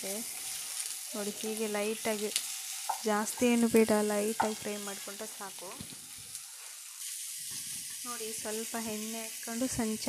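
Onion pieces frying in oil in a steel pan, with a steady sizzle, while a wooden spatula stirs them. Short runs of pitched, voice-like sounds come and go over the sizzle, loudest a few seconds in.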